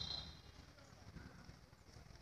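Faint outdoor background: a low rumble and soft diffuse noise, with a high steady tone dying away in the first half second.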